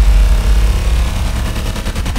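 Cinematic intro sound effects: a deep, sustained bass boom with a fast rattling pulse of about ten hits a second building over it.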